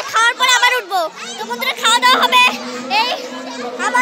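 High-pitched voices of girls and children calling out and chattering over one another, with a faint steady hum underneath.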